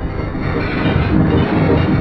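A Windows animation sound put through the 'G Major' effect chain: layered, pitch-shifted copies blended into a loud, harsh, distorted wash with a low drone, growing a little louder.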